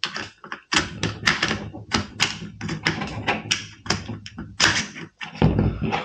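Metal parts of a Hatsan Escort shotgun clicking and knocking as the recoil spring assembly and bolt are handled and slid into place: a run of irregular sharp clicks and knocks, several a second.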